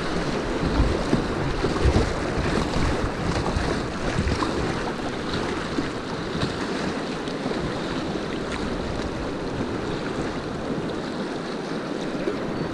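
Rushing river rapids around a kayak, with wind buffeting the microphone, the low rumble strongest over the first few seconds.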